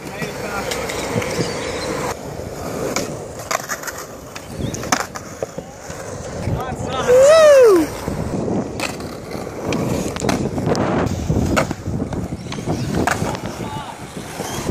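Skateboard wheels rolling on a concrete skatepark, with repeated clacks and knocks of boards hitting the ground. About seven seconds in, a person gives one loud shout that rises and then falls in pitch.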